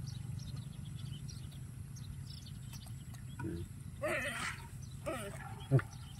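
A macaque gives a brief high squeal just after four seconds in, over faint clicking as hands pick through a handful of wet winged insects.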